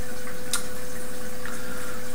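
Steady hiss of background noise with a faint constant hum tone running under it, and one brief click about half a second in.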